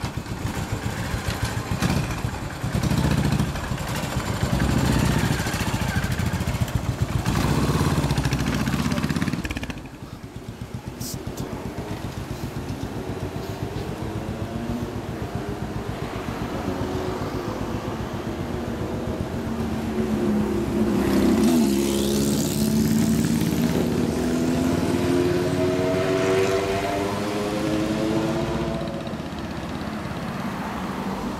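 Yamaha SR single-cylinder motorcycles riding off: loud, pulsing engine revs as they pull away for about the first ten seconds, then quieter traffic. In the last third a vehicle engine accelerates with rising pitch.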